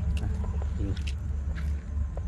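A steady low rumble with a hum, like a motor running nearby, with a few faint clicks and a brief murmur of voice.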